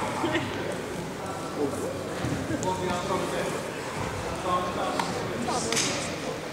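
Indistinct talk from people around a sports hall, no single clear speaker, with a brief sharp noise near the end.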